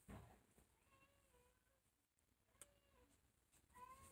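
Near silence: a brief rustle of cloth at the start, then faint, wavering pitched calls, an animal's cries, about a second in, near three seconds and again at the end.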